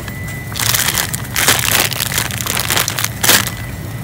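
Plastic candy and snack bags crinkling as an armful of them is handled and shifted, in several loud crackling bursts.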